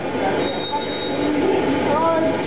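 Indistinct voices murmuring in a room, with a thin, steady high-pitched tone lasting under a second near the start.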